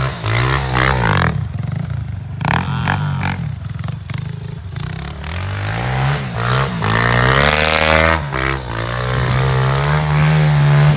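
Honda CRF 100F pit bike's small single-cylinder four-stroke engine revving up and down again and again as the rear wheel spins in snow, with a long climb in revs about seven seconds in.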